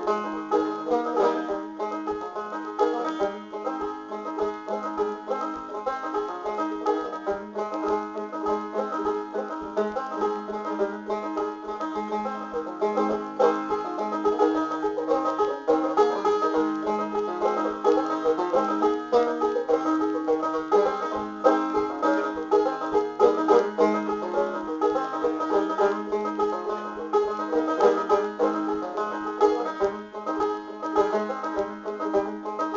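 Epiphone MB-200 five-string banjo with an aluminum pot, played solo in a frailing pattern mixed with picking. It carries a quick, steady run of plucked notes through an old Civil War marching tune.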